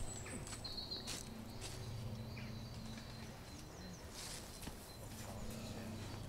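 Faint footsteps on soft woodland ground, a scattering of small irregular crunches and knocks, with a few short high chirps in the background.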